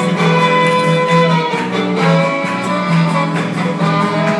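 Live bluegrass fiddle playing a lively tune, with upright bass backing.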